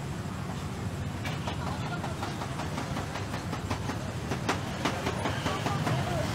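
Busy outdoor background noise: a steady low rumble with a fast, uneven run of sharp clicks that starts about a second in.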